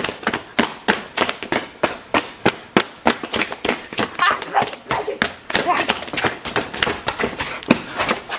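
A rapid, uneven string of sharp clicks, several a second, made by people horsing around, with short bursts of vocal noise in between.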